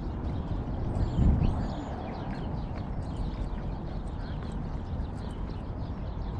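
Many small birds chirping at once, short quick calls that overlap throughout, over a steady low rumble with a brief louder swell about a second in.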